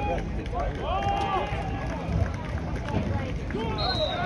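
Voices calling and shouting across an outdoor football field during a play, over a steady low rumble, with a single whistle blast starting right at the end as the play ends.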